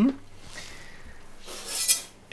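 A short rustling scrape that swells near the end, as a container of small pebbles is grabbed and handled, after a quiet stretch.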